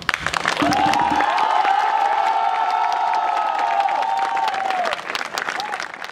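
Audience applause that breaks out suddenly, with many voices joining in one long held cheer that fades out after about five seconds while the clapping goes on.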